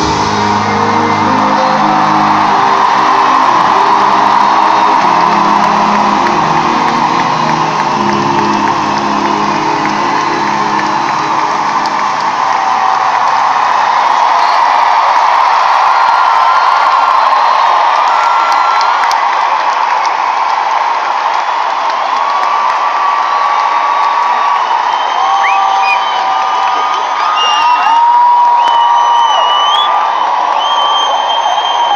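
Arena concert crowd cheering and screaming as the band's last sustained chords ring out and fade about halfway through. After that the crowd's cheering goes on alone, with high sustained cries standing out near the end.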